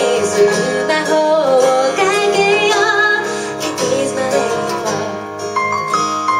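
Live band music: a woman singing over acoustic and electric guitar. Near the end the singing drops away, leaving plucked guitar notes.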